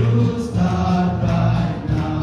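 A group of young men singing a song together as a choir, holding sustained notes that change every half second or so.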